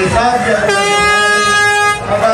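A single long horn blast, one steady pitch, starting just under a second in and held for over a second, over the voices of a street crowd.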